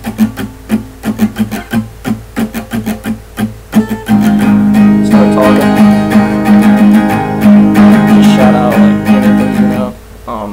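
Acoustic guitar strummed with the strings muted by the fretting hand, giving a rhythmic percussive chugging pattern. About four seconds in, it breaks into full, ringing strummed chords, louder, as the player falls from the muted strumming pattern into the song.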